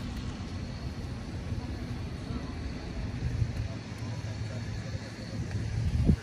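Wind buffeting the microphone outdoors, a gusting low rumble that rises and falls.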